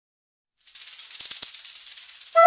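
A rattle or shaker shaken fast and steadily, starting after about half a second of silence: a dry, hissing rattle used as a snake sound effect.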